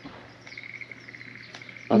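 A faint, steady, finely pulsed trill of a calling animal, over a low steady hum. A voice cuts in at the very end.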